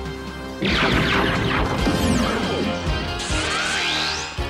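Cartoon blaster-shot and crash sound effect about half a second in, a loud noisy burst with falling sweeps, followed near the end by a rising electronic sweep, over dramatic background music.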